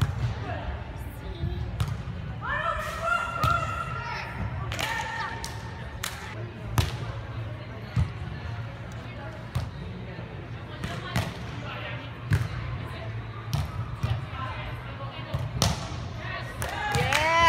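Volleyball rally on sand: a run of sharp slaps every second or two as players pass, set and hit the ball. Players shout calls, one held call a few seconds in, in a large indoor hall.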